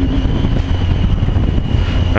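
Wind rushing over the microphone with road and engine rumble from a Triumph Tiger 800 three-cylinder motorcycle on the move; its pitched engine note drops away right at the start, leaving mostly wind noise.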